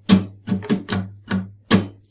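Steel-string acoustic guitar strummed in a steady rhythm, about six strokes. The strings are muted percussively on the accented beats so those strums sound like a snare drum.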